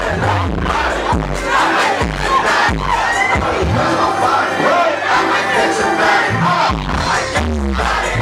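A hip-hop track with repeated deep, sliding bass hits plays loud while a packed club crowd shouts and chants along.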